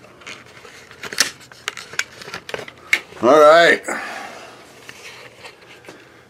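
Handling noise in a small room: a run of sharp clicks and light knocks, then a short wordless vocal sound a little after three seconds in.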